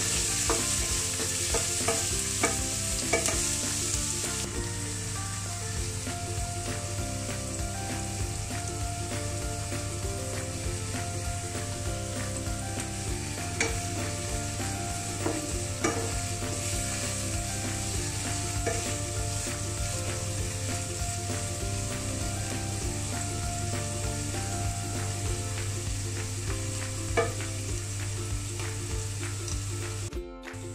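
Sliced red onions frying in oil in a non-stick pan, sizzling steadily while a wooden spatula stirs and scrapes them with small taps. They are being fried down toward a brown colour.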